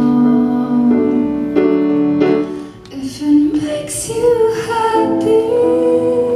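Woman singing a slow song live, holding long notes that step from pitch to pitch, with piano accompaniment.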